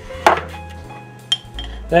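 Kitchenware clinking: a sharp knock about a quarter of a second in, then a lighter clink with a brief ring about a second later.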